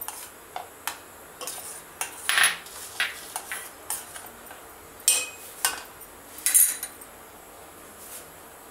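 A metal spoon clinking and scraping against the side of a metal cooking pot, a string of irregular knocks as lumps of mawa are tapped off the spoon into the milk.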